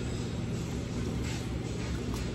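Steady restaurant background: a low hum with faint background music, level and unchanging.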